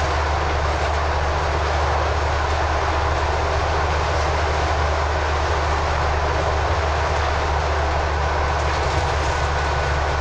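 Scania-chassis Enviro 400 double-decker bus on the move, heard from the front of the upper deck: a steady diesel engine drone with road and tyre noise.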